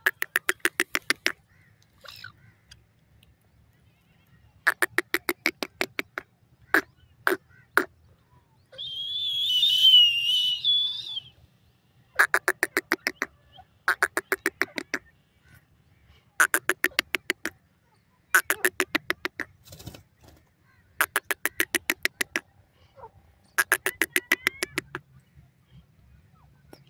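A francolin (teetar) calling: a fast run of clucking notes, about a second at a time, repeated every couple of seconds. A warbling high whistle lasting about two seconds comes near the middle.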